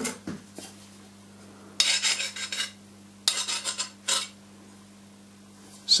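A steel hand file is scraped across a tempered steel pickaroon spike in three strokes, the first about two seconds in and the last, shorter one near four seconds. The file bites, a sign that tempering has drawn the hardness out of the spike. There are a few light handling clicks at the start.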